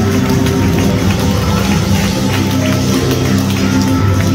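Worship music with sustained chords and a steady beat, loud and unbroken.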